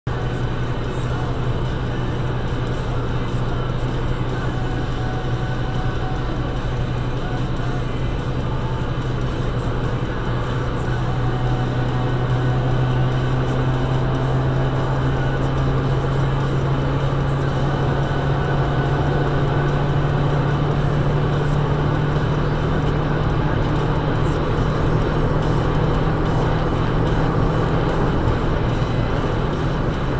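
Car engine and road noise heard from inside the cabin at highway speed: a steady low drone that creeps slowly up in pitch as the car gains speed, over a constant rumble of tyres and wind.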